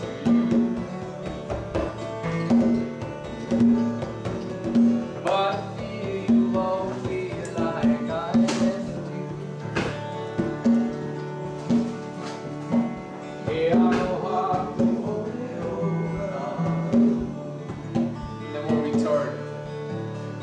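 Acoustic guitar strummed along with a hand-played conga drum in a steady rhythm, with a man's voice singing over it at times.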